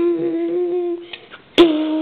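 A person humming a steady note that breaks off about a second in. A sharp click follows about half a second later, then a second hummed note, slightly lower and wavering a little.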